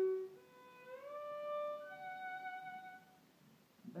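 Violin playing a shifting exercise: a held note dies away, then a new note slides audibly up to a higher pitch about a second in as the hand shifts position. The higher note is held and fades out near the end.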